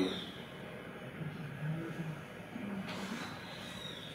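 Quiet room tone in a lecture room: a steady low hum with a few faint, indistinct murmurs.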